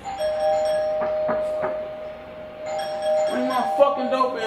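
Doorbell sounding two steady tones together for about two seconds, then sounding again from about three seconds in.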